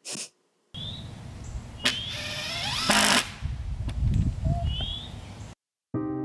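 Outdoor ambience with a low wind rumble and a few short high chirps, a sharp knock about two seconds in, and a brief louder burst of noise near three seconds.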